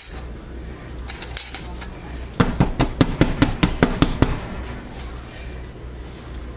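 A soap mold filled with freshly poured, swirled soap batter knocked down repeatedly on a glass cooktop, the usual way to settle the batter and knock out air bubbles. A few light clicks come about a second in, then a quick run of about a dozen sharp knocks over two seconds.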